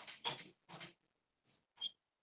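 Marker pen writing on a whiteboard: a run of short scratchy strokes in the first second, then two brief strokes, the last with a short high squeak near the end.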